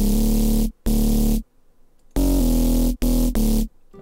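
Electronic future house playback: a synth bass and chord stab in four short, loud blocks, each cut off abruptly, with a gap of under a second in the middle.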